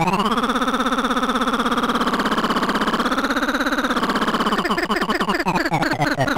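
Circuit-bent talking planetarium toy's speech chip giving out a sustained buzzy electronic tone that glides up at the start and wavers in pitch. About two-thirds of the way through it breaks into choppy, stuttering fragments.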